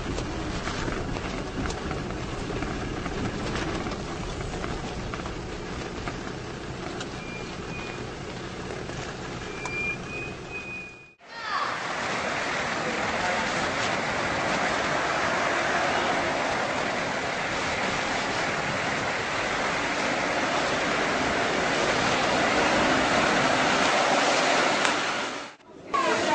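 Vehicle cabin noise on a rough dirt track: a steady engine drone and low rumble. The sound cuts out about eleven seconds in and is replaced by a steady, even rushing noise.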